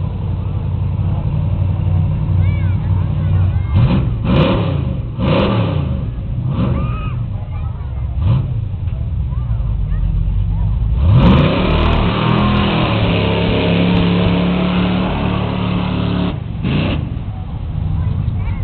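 Pickup truck's engine idling and blipped in short revs a few times, then held at high revs for about five seconds past the middle before dropping, with one more quick rev near the end.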